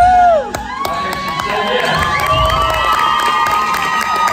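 Crowd cheering and screaming, with a loud high scream in the first half-second, then many overlapping shouts and whoops.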